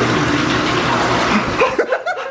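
Water running steadily from a bathtub tap into an ice bath, dying away near the end as a short laugh comes in.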